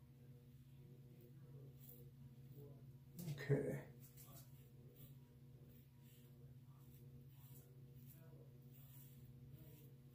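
Faint scraping strokes of a Gillette Super Adjustable "Black Beauty" double-edge safety razor with a Derby Premium blade on lathered neck stubble, over a steady low hum. A short voice sound a little past three seconds in is the loudest thing.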